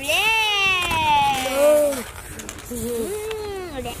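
Balloon whistles squealing, several at once, in long wavering wails that slide up and down in pitch, one falling steadily over the first two seconds, then shorter rising-and-falling wails near the end.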